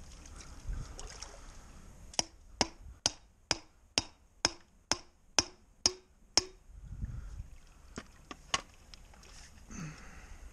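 A hand hammer striking about ten evenly spaced blows, roughly two a second, each with a short ringing note. Three more blows follow near the end.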